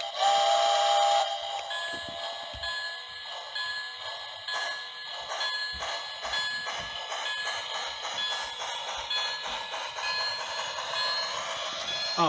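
The onboard sound system of a Lionel HO scale Berkshire steam locomotive sounds a steam-whistle blast in the first second. It then rings its bell at an even pace over a rhythmic chuffing as the engine gets under way.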